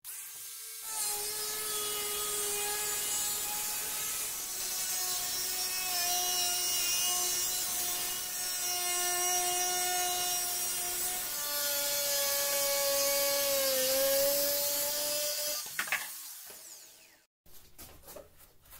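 Angle grinder running with a thin disc cutting through the wall of a plastic jerrycan: a steady motor whine over a cutting hiss, its pitch sagging a little as the disc bites. It is switched off near the end and winds down.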